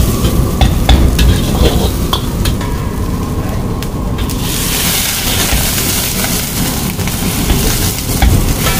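A steel ladle scraping and knocking in a wok as shredded cabbage, capsicum and carrot are stir-fried, sizzling. About four seconds in, a louder, steady hiss sets in as liquid for the manchurian gravy goes into the hot wok.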